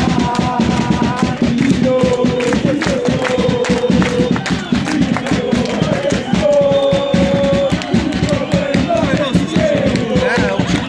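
Football supporters singing a chant together in the stands, long held notes one after another over a dense patter of claps and crowd noise.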